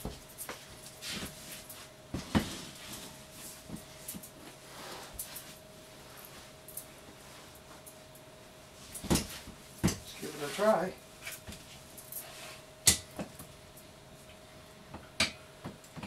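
Scattered knocks and clicks from a mini stepper machine and a selfie stick being handled as a man gets onto the stepper, the sharpest knocks about nine, ten and thirteen seconds in. A brief murmur of voice comes about ten seconds in, over a faint steady hum.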